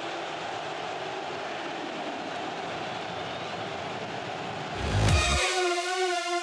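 Steady stadium crowd noise from a large football crowd. About five seconds in it swells briefly, then a sustained musical chord comes in over it.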